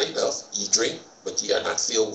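A man speaking, words not made out.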